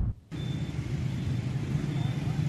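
A music sting cuts off at the very start, then after a brief gap comes the steady low rumble of street traffic.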